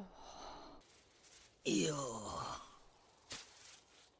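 A person's breathy exhale, then a long sigh falling in pitch, with a short click near the end.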